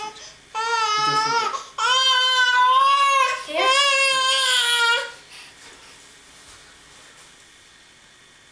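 A young child's high voice drawn out in three long, wavering notes of a second or more each, ending about five seconds in.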